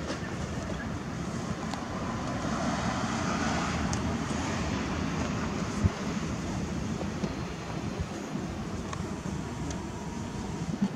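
Street traffic noise, steady, with a vehicle passing that swells about two to four seconds in. A single sharp knock sounds about six seconds in.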